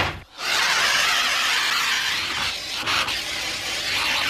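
A loud, steady hiss, starting about half a second in after a short burst, with the level wavering slightly.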